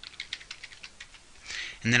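Computer keyboard typing: a quick run of key clicks that stops about one and a half seconds in.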